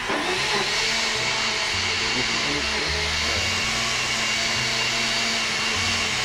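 Countertop blender running at a steady, even whir, blending a liquid mix of nut milk, vegan condensed milk, rum and spices.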